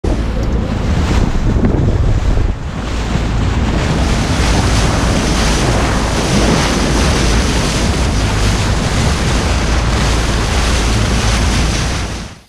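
Wind buffeting the microphone over the rush and splash of water past the hull of a moving boat at sea, steady and loud, with a brief dip about two and a half seconds in.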